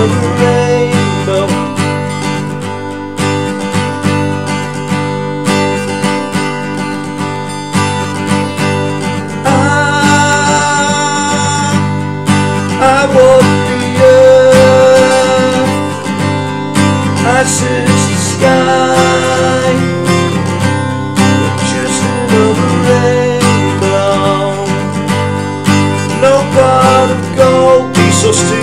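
Steel-string acoustic guitar (Taylor 214ce) capoed at the third fret, strummed through the song's verse progression: E, Esus4, Dsus2 and Asus2 shapes, with the chord changing every few seconds.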